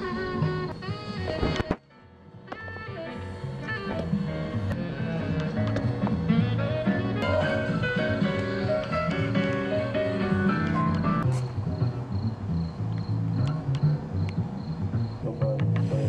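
Music with pitched notes over a bass line. It cuts out suddenly about two seconds in and fades back up over the next couple of seconds.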